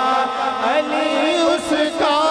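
A man's solo voice singing a naat, a devotional Urdu poem, into a handheld microphone, with the melody gliding between long held notes.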